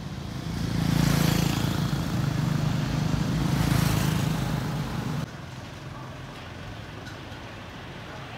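A motorbike's engine running as it passes close by, swelling and then stopping abruptly about five seconds in, leaving quieter street noise.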